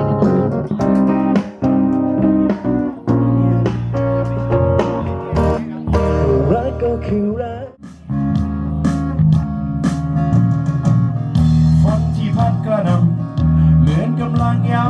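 A small live band playing a slow, easy song: strummed acoustic guitars and a keyboard, with a singer. The music drops briefly just before eight seconds in, then carries on.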